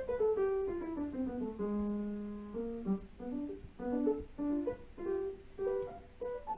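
Piano music: a falling run of notes that settles on a held low note about two seconds in, then shorter phrases.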